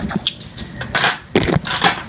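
Dominoes clicking against each other and clacking on a wooden floor as they are handled: a handful of sharp clicks, with a short scrape about a second in.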